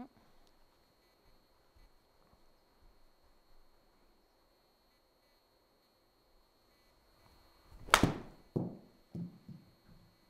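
Golf swing with a gap wedge in an indoor simulator bay: a short swish, then one sharp crack as the club strikes the ball off artificial turf about eight seconds in, followed by a few softer knocks.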